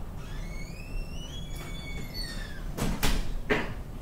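A drawn-out squeak that rises in pitch over about two seconds, overlapped by a second squeak falling in pitch, then two knocks about half a second apart near the end.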